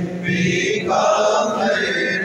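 A man chanting a religious recitation in long, held melodic phrases.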